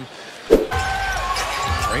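A single sharp thump about half a second in, then basketball arena game noise: a steady low crowd rumble with a few thin squeaks.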